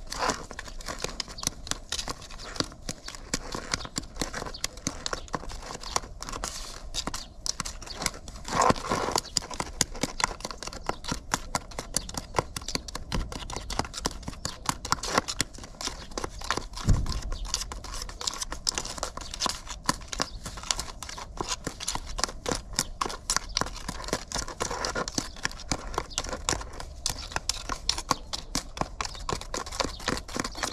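A metal spatula stirring and scraping a stiff cement-based hydraulic sealing compound in a plastic tub as it is mixed with water for filling cracks in concrete: a fast, continuous run of gritty scrapes and clicks, with a couple of louder knocks against the tub.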